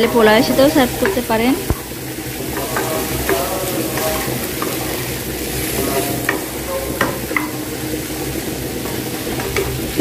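Wooden spatula stirring vegetables and shrimp in a nonstick frying pan, with a steady sizzle of frying and a few sharp taps and scrapes of the spatula against the pan.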